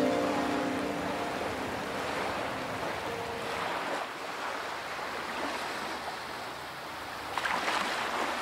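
Ocean waves washing: a steady, even rush of water that swells a little near the end.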